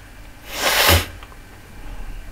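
A person sneezing once: a loud hissy burst about half a second long that ends sharply about a second in.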